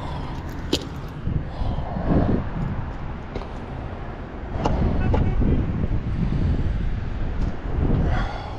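Outdoor background rumble of wind and distant road traffic, with a couple of sharp clicks, one about a second in and one around the middle.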